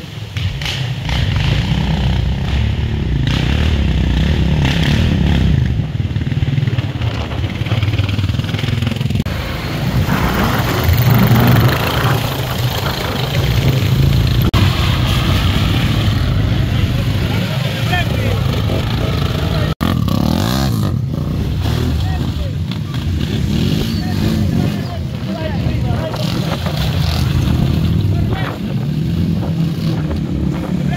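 Quad bike (ATV) engines revving up and down as the quads churn through deep mud, with people's voices over them.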